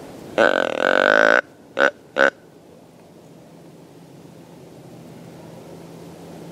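Whitetail deer grunt call blown close by: one long grunt about a second long, then two short grunts in quick succession.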